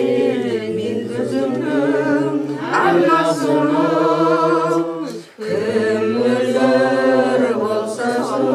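Voices singing together in long held, slightly wavering phrases. The singing breaks off briefly about five seconds in, then resumes.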